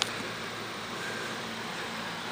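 Steady background hiss with no distinct events, apart from a small click right at the start.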